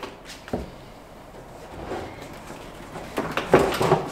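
Handling noise from the plastic sections of a vertical aeroponic tower garden being gripped to be lifted apart. A single light knock comes about half a second in, and a short run of knocking and scraping follows near the end.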